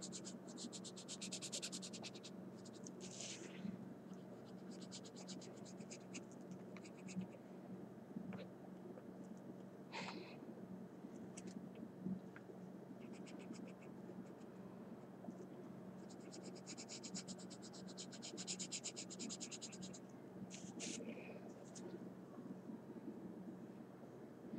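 Coloured pencil scribbling on paper in fast back-and-forth strokes, in runs of a few seconds with short pauses between; faint.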